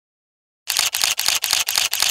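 Camera shutter firing in rapid continuous bursts, about four shots a second, starting just over half a second in.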